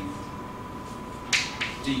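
Chalk on a blackboard writing a letter: one sharp tap about a second and a half in, then two quicker, fainter strokes.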